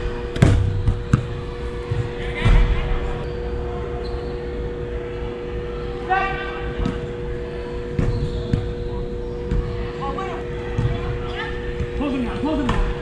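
Soccer ball being kicked on indoor artificial turf: a few sharp thuds, the loudest about half a second and two and a half seconds in. Players call out across the pitch, with one loud shout about six seconds in, over a steady hum.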